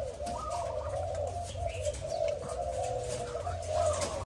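Caged Malaysian-strain spotted doves cooing, a low steady coo that runs on without a break.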